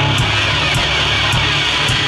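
Loud live metalcore band playing: distorted guitars and bass over drums, with a sharp drum hit about every half second.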